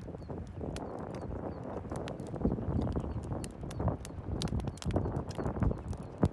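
Eating sounds: a metal fork clicking and scraping against a camp plate at irregular moments as it picks up food, with chewing close to the microphone.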